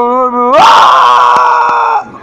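A steady pitched tone, then about half a second in a person lets out a loud, high, sustained scream that holds for about a second and a half and cuts off suddenly.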